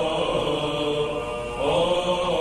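Byzantine chant sung by a group of monks' male voices: a slow, melismatic melody over a held low drone (the ison). About one and a half seconds in, the melody sinks and softens, then a new phrase enters with a rising note.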